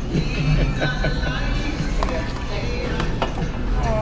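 Restaurant background: Jamaican-style music playing over the voices of other diners, with a few sharp clicks in the second half.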